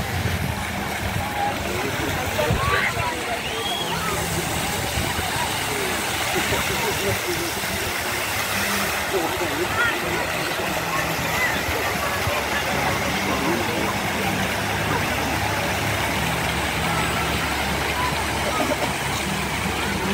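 Fountain jets splashing into a shallow pool, a steady rush of water, with the chatter of a crowd of people around it.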